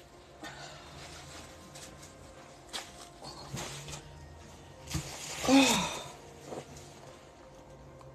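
A person moving back to a table and sitting down, with a few scattered knocks and rustles. About five and a half seconds in comes a short voiced sigh that slides down in pitch.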